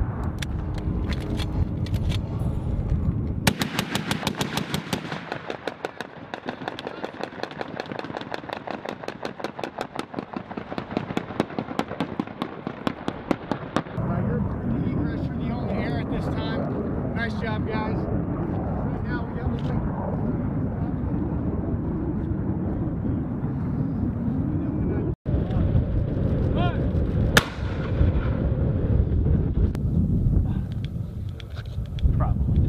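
AH-1Z Viper attack helicopter flying, with a long run of fast, evenly spaced beating pulses, then the rotor and turbine sound swelling and fading as it passes. A single sharp crack comes near the end.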